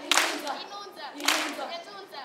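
A large group of children clapping in unison, two claps about a second apart, with their voices singing together between the claps.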